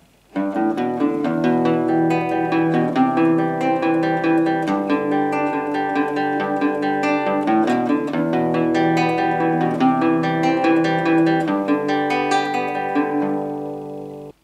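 Nylon-string guitar fingerpicked in steady arpeggios: a bass run G–A–B–D, then broken Em, C and G6 chords, played through at full tempo. The notes start a moment in and ring out toward the end.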